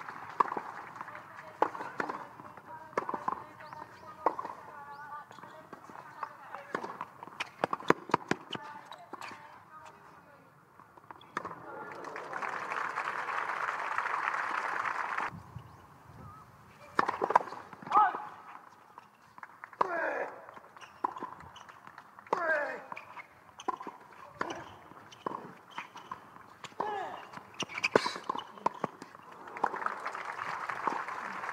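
Tennis ball struck by rackets in a rally, sharp pops every second or so, then about twelve seconds in a burst of crowd applause that cuts off suddenly. In the second half, voices with sliding pitch and a few more racket hits.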